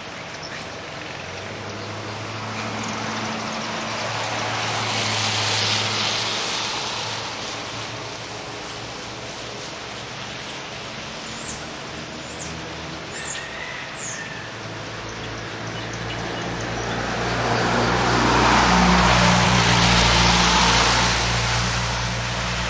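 Two motor vehicles passing in turn, each a rising and fading rush of engine and road noise, the second one louder, with a few short bird chirps in the lull between them.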